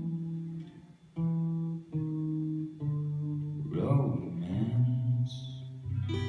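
Solo acoustic guitar playing a slow passage without singing, notes and chords picked about once a second and left to ring, in the song's closing bars. A short wordless vocal sound comes about four seconds in.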